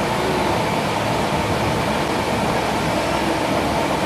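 Steady noise of large ventilation fans running.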